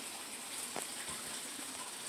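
Faint steady hiss of background noise with no animal call, broken by one faint click a little before the middle.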